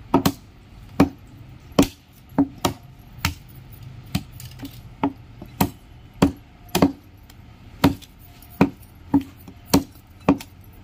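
Steel meat cleaver chopping mutton on a wooden log chopping block: a quick, uneven run of about sixteen sharp chops, roughly two a second.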